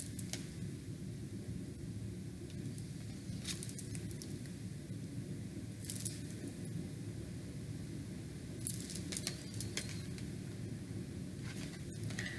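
Tarot cards being handled: a few brief soft swishes as cards are slid and picked up, three or four times, over a steady low room hum.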